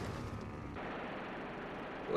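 A war film's aerial dogfight soundtrack playing quietly in a screening room: a steady drone of aircraft engines with gunfire. It follows a louder stretch of brass-band music that has faded out.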